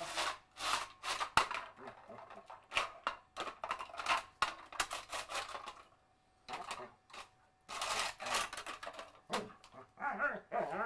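A tin can scraping and clattering over stone paving slabs as a standard schnauzer pushes it along, in irregular bursts with sharp knocks and a short quiet spell about two-thirds of the way through.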